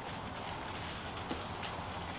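A few separate footsteps crunching in dry leaf litter, over a steady low background noise.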